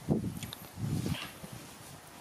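Soft low thumps and rustling as a baby monkey scrambles on a satin-covered bed with a woven shopping bag over its head. Two brief high-pitched sounds come about half a second and just over a second in.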